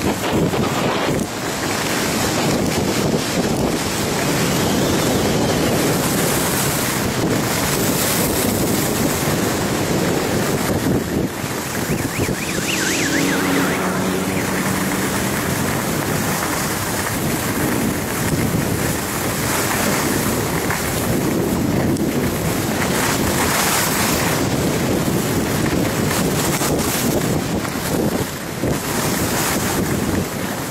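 Wind rushing over a skier's action-camera microphone during a downhill run, mixed with the hiss and scrape of skis on packed snow. A brief faint pitched sound comes through about halfway.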